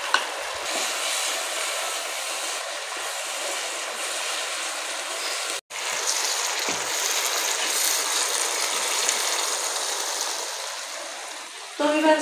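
Spiced tomato and yogurt masala sizzling as it fries in oil in a pan, stirred with a wooden spoon. The steady sizzle cuts out for an instant a little past halfway and eases slightly near the end.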